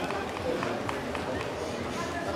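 Indistinct voices of people talking nearby, with no clear words, over open-air background noise.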